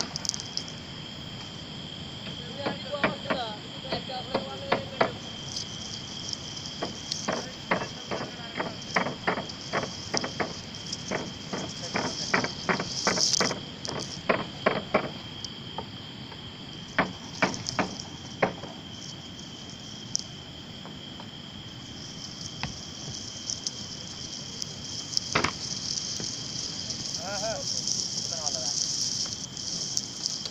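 Night insects, crickets, chirring steadily in two high bands, with many irregular sharp clicks and knocks of the camera brushing and pushing through grass, thickest in the first half.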